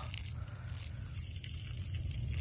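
A stream of urine splashing faintly and steadily onto soil and debris, over a steady low hum.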